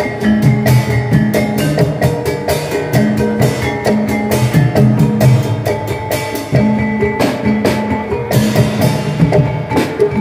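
Javanese gamelan music accompanying an ebeg (kuda kepang) dance: a dense, steady pattern of struck tuned metal percussion ringing over hand-drum strokes.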